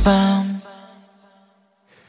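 K-pop track stopping dead for a break: one held note fades out in about half a second, then the music drops to silence.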